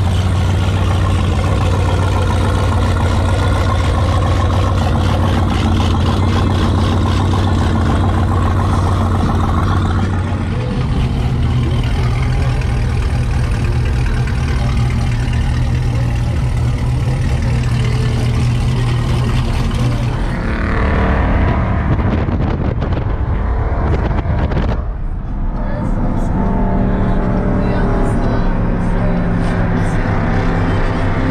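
Car engines running in slow-moving traffic, a steady low engine note that steps up in pitch about a third of the way in, with people's voices mixed in.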